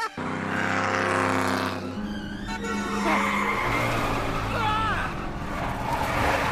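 Race car engine revving with tyres squealing as the car spins donuts, the engine note shifting a couple of times.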